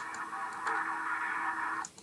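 President Grant CB radio hissing receiver static through its speaker, a steady rush with a low hum under it, a little louder about two-thirds of a second in. Just before the end a front-panel push button clicks and the static cuts off as the radio is switched to PA.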